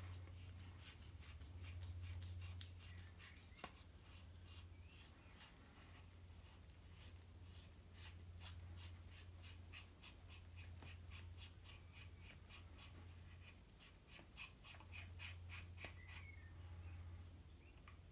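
Faint light clicks and scratchy rubbing of a threaded metal section of an EdGun Leshiy 2 air rifle being unscrewed by hand, over a steady low hum.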